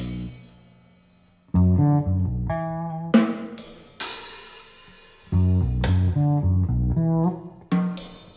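Electric bass and drum kit playing a stop-start improvised jazz passage: short bass phrases punctuated by cymbal crashes and drum hits. There is a brief lull about a second in.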